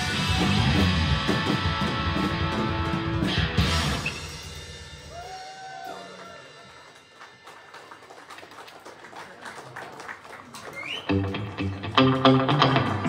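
Live rock band with electric guitar, bass and drums playing loudly; the song winds down about four seconds in. A quieter gap with small clicks and knocks follows, then the band starts the next song with bass and drums about a second before the end.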